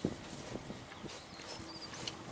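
Cows pulling at and chewing a leafy elm branch: soft rustling and munching with scattered small knocks, one sharper knock right at the start.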